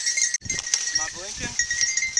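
A beagle on a cottontail's scent gives a short bay, one call rising and falling about a second in. The rabbit is holed up in the brush pile.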